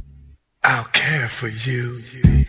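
Deep-house track breaking down: the kick drum and bassline cut out, and after a brief gap a voice-like vocal sample with sliding pitch plays on its own.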